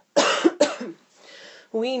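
A person coughing twice in quick succession, then a soft intake of breath.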